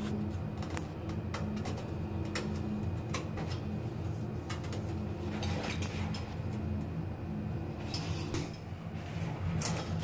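Light clicks and knocks of a tile corner shelf being set into thinset and pressed and adjusted against the wall tile, scattered irregularly through, over a steady low hum.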